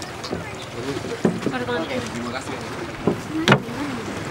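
People's voices talking over a few knocks of feet and gear on the wooden deck planks of a boat as people climb aboard. The loudest is one sharp knock about three and a half seconds in.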